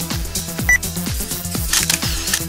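Electronic dance music with a steady kick drum, about two beats a second. A short high beep cuts in about a third of the way through, and a brief bright click-like burst comes near the end.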